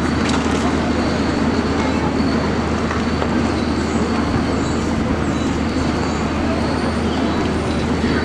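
Steady outdoor city-centre street ambience: a continuous rumble of traffic and passers-by, with no single sound standing out.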